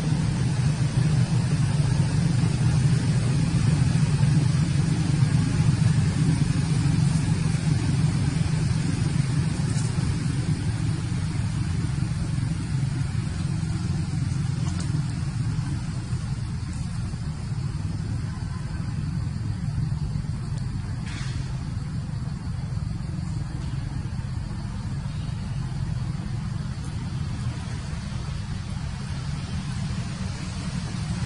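A steady low rumble, like a running engine or distant traffic, a little louder in the first half and easing after about sixteen seconds. A single brief click comes about twenty-one seconds in.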